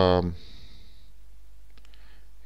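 A couple of quick, faint computer mouse clicks near the end, over a low steady hum.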